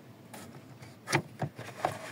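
A few sharp plastic clicks and rustles about a second in, as the cabin air filter is pulled out of its housing behind the removed glove compartment.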